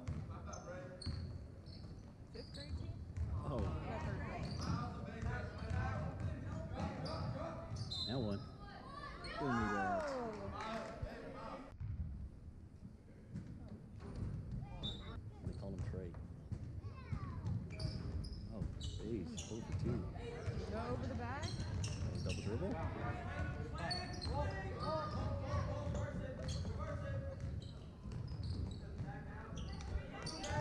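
A basketball dribbled on a hardwood gym floor, bouncing repeatedly in a reverberant gymnasium, with spectators' voices chattering over it.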